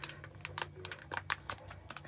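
Foil mask pouch crinkling as it is squeezed and handled to work the gel out: a quick, irregular run of sharp little clicks.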